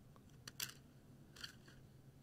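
Two faint, sharp snips about a second apart: flush cutters cutting clear plastic 3D-printer filament.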